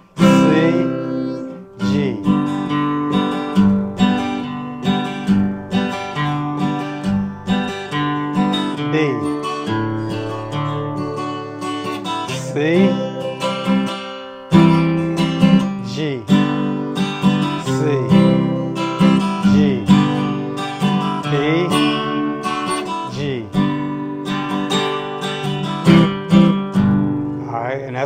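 Sunburst Epiphone steel-string acoustic guitar strummed in a steady rhythm, playing the chorus chord changes F, C and G in standard tuning.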